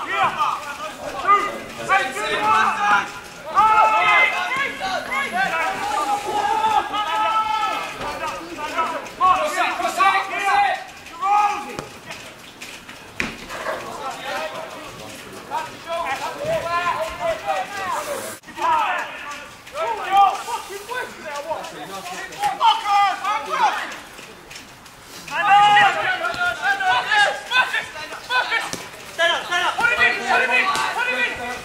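People's voices talking, the words not made out, through most of the clip, with a couple of short lulls.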